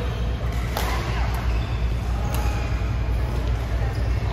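Badminton rackets striking a shuttlecock in a doubles rally: three sharp smacks within the first two and a half seconds, over a steady low hum.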